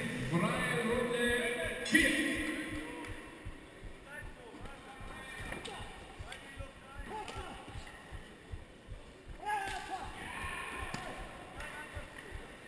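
Dull thuds on the ring canvas from the fighters moving and striking, carried through the mat to the camera, with shouting voices in the first few seconds and again near the end.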